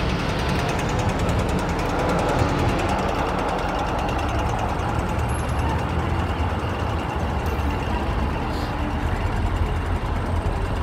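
Street traffic: a tram and cars passing close by, a steady rumble of motors and tyres on the road.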